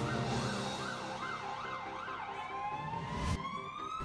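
An emergency vehicle siren sweeping quickly up and down in pitch, then switching to a slow rising wail near the end.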